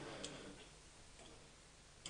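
Near silence: room tone in a large hall, with a faint click about a quarter second in and another fainter one about a second later.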